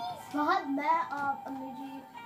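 A child singing a slow melody, with held notes that slide between pitches.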